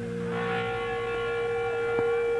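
Electric guitar feedback through the amplifier: one steady held tone that grows fuller about half a second in.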